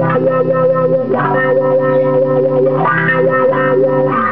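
Electric guitar played through floor effects pedals, holding sustained chords that change a little after a second in and again near three seconds.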